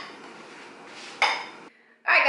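Metal fork scraping and clinking against a ceramic baking dish through glaze, with one louder scrape just over a second in; the sound then cuts off suddenly.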